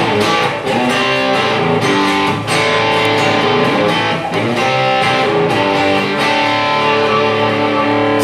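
Guitar instrumental break in a live song: picked notes and strummed chords with no singing, settling into longer held notes in the second half.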